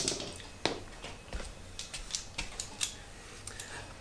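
Light clicks and metallic clinks of hand tools being handled, the sharpest one right at the start and a few more scattered through.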